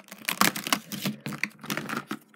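Irregular clicks and taps of a trading card game box's contents being handled and taken out: plastic and card packaging knocking together.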